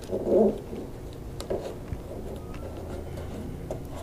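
Quiet hand work with blue masking tape and a small spacer on a fiberglass flap: faint rustles and a few small clicks. A short low hum comes about half a second in.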